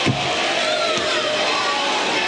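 Gymnasium crowd noise: many spectators cheering and shouting together in a steady din, with a single knock right at the start.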